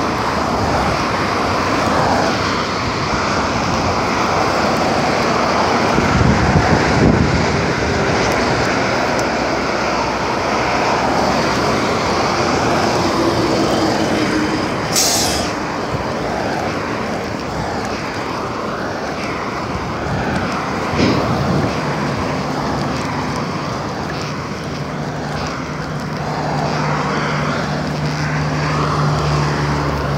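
Road traffic going by on a busy street, with a brief sharp hiss about halfway through. Near the end a nearby vehicle's engine runs with a steady low hum.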